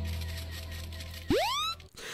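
A steady low electronic drone, then a quick upward pitch sweep about a second and a half in that cuts off sharply: a sound effect on the short video's soundtrack.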